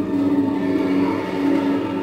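A steady low drone of several held tones, continuing evenly with no breaks.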